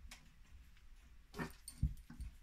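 Gloved hands setting a steel watch case into a cushioned case holder on a bench: a short rubbing scrape, then a dull thump with a faint click near the end as it seats.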